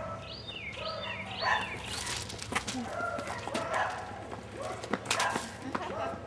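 Outdoor ambience. Near the start a bird chirps three times in quick succession, followed by scattered faint animal calls and a few sharp scuffs or knocks.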